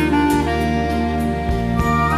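Symphony orchestra playing an instrumental arrangement of a pop ballad: a sustained wind melody changing note about every half second over held strings and a steady bass line.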